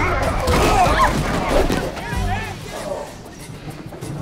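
Film soundtrack: wordless shouts and grunts from men in a scuffle, over background music. The voices die away after about two seconds.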